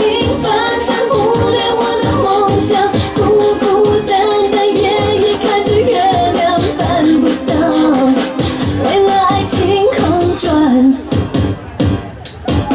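Mandarin pop dance song with singing over a steady beat, played loud for a stage dance routine; the music thins out briefly near the end.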